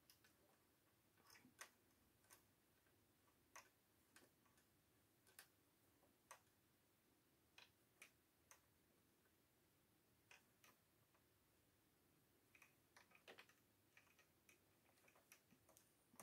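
Near silence with faint, irregular small clicks, about a dozen scattered through: a small metal hook tapping the plastic needles of a circular knitting machine as stitches are lifted and dropped by hand to form ribbing.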